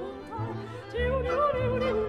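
Classical soprano singing an Auvergne folksong in Occitan with vibrato, over a chamber ensemble accompaniment with sustained low notes. A new vocal phrase begins about halfway through.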